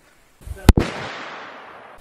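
A single 7mm rifle shot about three-quarters of a second in, its echo rolling away and fading over the following second.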